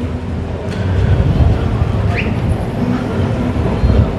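Street traffic: the low, steady rumble of a motor vehicle running close by.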